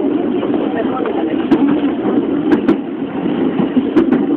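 JR Yamanote Line commuter train running along the line, a steady rumble of running noise heard from on board, with a few sharp clicks in the middle.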